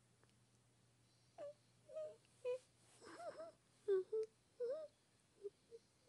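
A voice making a string of short, high whimpering squeaks, creature noises, about nine of them, some bending up and down in pitch.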